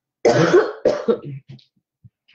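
A woman coughing: a short run of loud coughs, trailing off into smaller ones.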